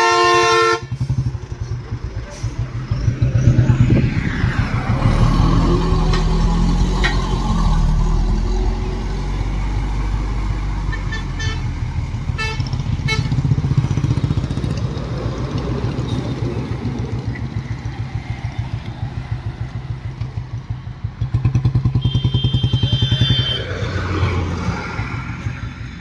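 A vehicle horn cuts off about a second in. Then a Royal Enfield motorcycle's single-cylinder engine runs steadily at riding speed with an even low beat, while other traffic swells past a few seconds in and again near the end.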